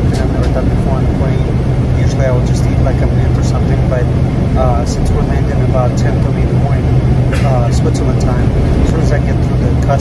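Steady drone of an airliner cabin with a constant low hum, with a man talking over it.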